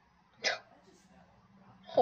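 A single short, sharp vocal burst from a person, about half a second in.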